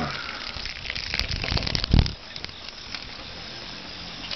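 Handheld camera handling noise: rustling and crackling with scattered clicks, then a dull thump about two seconds in, after which it goes quieter.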